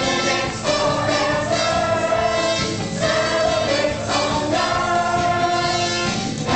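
Large cast of young performers singing together over musical accompaniment, in long held notes that change every second or two.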